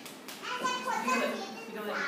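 Young children's voices, talking and calling out in the room, loudest about a second in.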